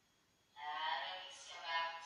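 A voice, drawn out and sing-song, starts about half a second in and goes on with short dips.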